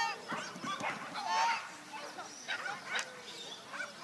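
Dog barking repeatedly while running an agility course, a string of short, high-pitched barks.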